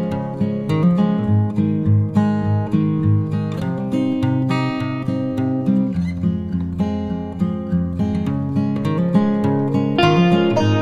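Background music of strummed and plucked acoustic guitar, with a steady run of picked notes.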